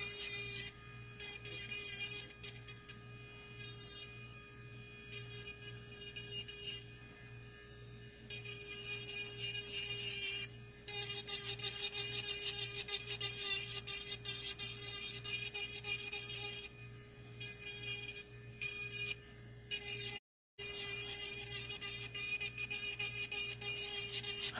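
Electric nail file (e-file) with a sanding bit smoothing the surface of powder nails, in stretches of scratchy grinding that stop and start as the bit is lifted and set back on the nail, over a steady motor hum. The sound cuts out completely for a moment about 20 seconds in.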